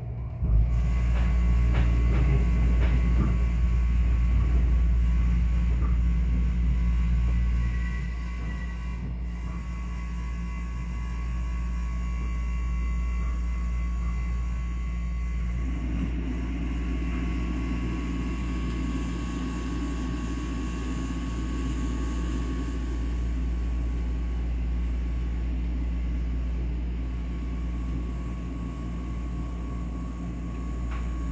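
Passenger train carriage heard from inside while running: a steady low rumble, louder for the first several seconds and then easing off, with a faint steady tone above it.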